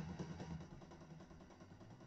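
A distorted electric guitar chord from a heavy-rock riff ringing out and fading away.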